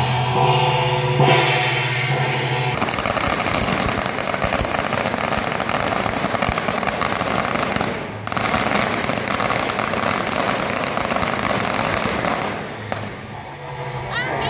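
Procession music with drums, then from about three seconds in a long string of firecrackers going off in a dense, rapid crackle. It breaks off for a moment near the middle and dies away shortly before the end.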